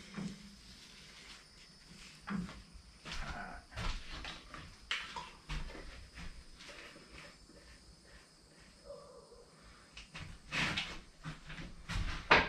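Scattered clunks, scrapes and rustles of things being handled and set down in a workshop, quiet at first, with a louder run of knocks near the end.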